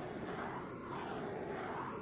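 Handheld torch flame running with a steady hiss as it is passed over a fresh coat of epoxy resin to pop the surface bubbles.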